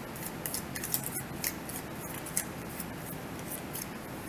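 A deck of tarot cards shuffled by hand: crisp, short snaps of cards sliding and striking against each other, about three or four a second.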